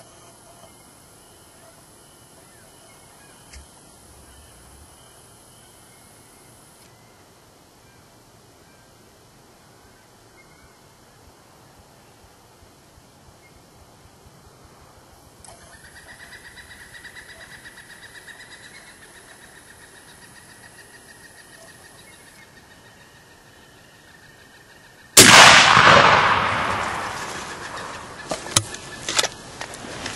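Quiet field background, then near the end a single loud shotgun blast that rings out and fades over a few seconds, followed by a few sharp knocks.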